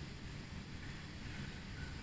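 Steady low background noise, a faint rumble with no distinct sounds in it.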